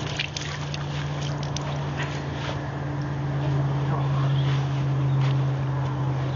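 A steady low mechanical hum with a fainter higher tone above it, and a few faint clicks and ticks over it.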